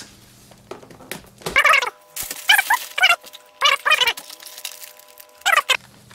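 Packing tape being torn off a cardboard parcel in about four short ripping pulls, some with a squealing pitch.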